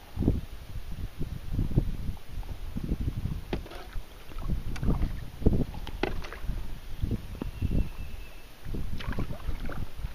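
Paddling on a lake: irregular paddle strokes splashing and dripping in the water, over wind rumbling on the microphone.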